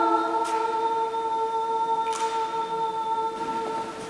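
A woman's unaccompanied voice holding one long, steady note, dying away near the end.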